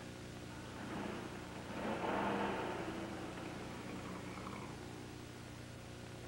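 A car engine pulling away and fading into the distance, rough enough in its running that a listener doubts the car will make it to the next farm.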